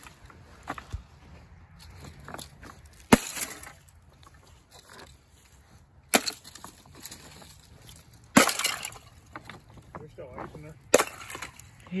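Thin ice on rocks cracking and shattering under thrown chunks: four sharp breaks a few seconds apart, each followed by a brief tinkling crackle of shards.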